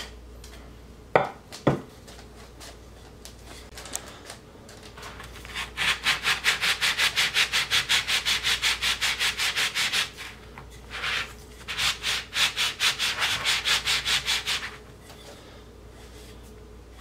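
Wooden handle end being sanded against a sanding sponge to round it off: fast, even rubbing strokes in two long spells with a short pause between. Two short knocks come a little over a second in.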